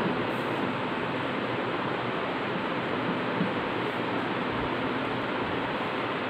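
Steady, even hiss of background noise, with no distinct events standing out.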